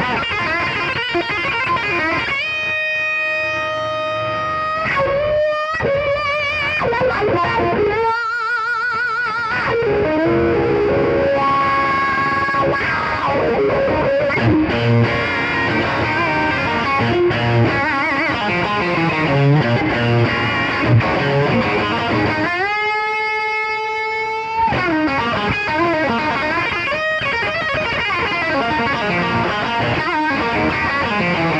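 Overdriven Fender Stratocaster playing a blues-rock lead: quick runs broken by long held, bent notes with wide vibrato, one long held note early on and another a little past two-thirds through.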